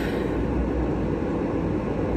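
Parked car idling, heard from inside the cabin as a steady low rumble with an even hiss of blowing air over it.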